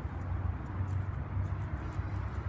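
Steady low background rumble with no distinct sound events.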